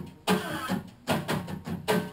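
Acoustic guitar strummed hard in rhythmic, percussive chord strokes, several a second, with an acoustic bass guitar playing along underneath.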